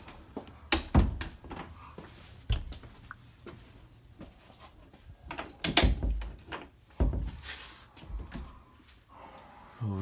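A door being handled, with several dull knocks and thumps at irregular intervals. The loudest comes a little before six seconds in.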